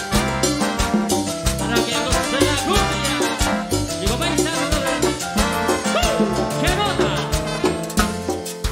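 A live cumbia band playing with a steady, dense beat over a bass line, with melody lines that bend in pitch.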